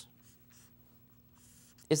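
Faint scratching of a marker pen writing a formula on paper, over a faint steady low hum.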